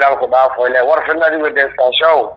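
Speech only: a man talking in Somali without a break.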